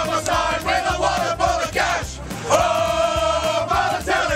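A group of football supporters singing a chant together, loud and ragged, ending on one long held note.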